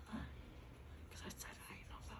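Quiet classroom murmur: faint whispered voices, with a few light clicks about a second in.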